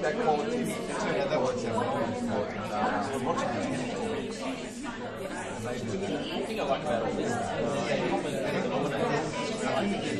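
Chatter of many people talking at once at tables around a large room, a steady hubbub of overlapping voices.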